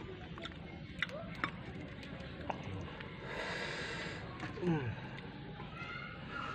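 A person eating by hand, with scattered sharp mouth clicks and lip smacks, a hissing breath lasting about a second around three seconds in, and a short falling vocal sound shortly before the end.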